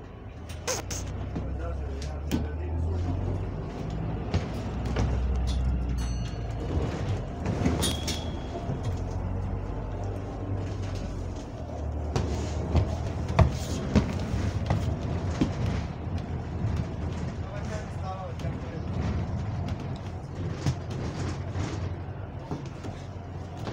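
Interior of a moving double-decker bus: a steady low engine drone with frequent rattles and knocks from the body and fittings.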